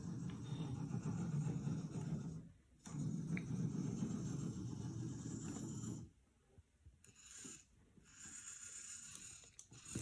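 Hobby servo motors of a 3D-printed robot arm whirring as they drive its joints: two runs of a few seconds each with a brief pause between, stopping about six seconds in, then a fainter sound near the end.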